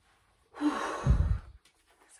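A woman sighing heavily: one loud, breathy exhale lasting about a second, starting with a brief voiced sound.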